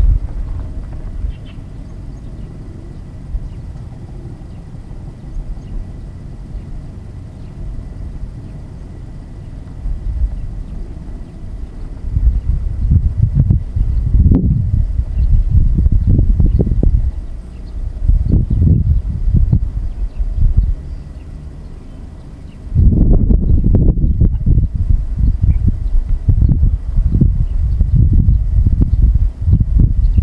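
Wind buffeting the microphone in gusts: a low rumble that comes and goes, quieter at first and strongest in the last third.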